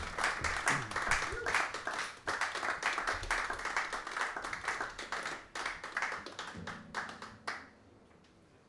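A small audience applauding between songs: a dense patter of hand claps that thins out and stops near the end.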